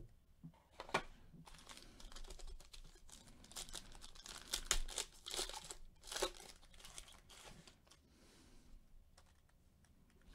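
Foil wrapper of a 2020 Panini Diamond Kings baseball card pack being torn open and crinkled by gloved hands: a run of sharp crackles and rips that is busiest in the middle and dies down after about seven seconds.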